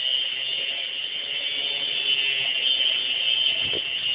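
Angle grinder running continuously against a bicycle frame, throwing sparks: a steady, high-pitched grinding whine.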